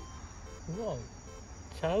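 Steady high chirring of night insects such as crickets, going on throughout, under a short laugh about a second in and a man's voice near the end.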